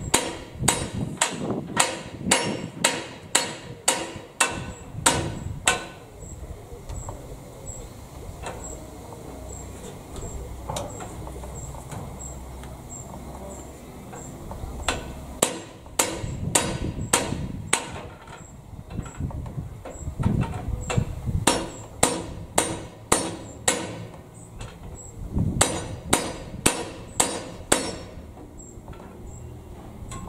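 Hammer strikes on steel inside a Krone BiG Pack baler as its repaired ram is refitted. The blows come in quick runs of about two and a half a second: one run at the start, a pause of about ten seconds, then several more runs through the second half.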